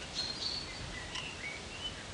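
A few faint bird chirps, short whistled notes, some rising and some falling, over a steady background hiss.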